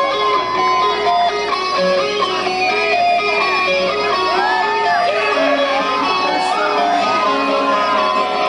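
Rock music with electric guitar, a line of short repeating picked notes under notes that bend up and down in pitch.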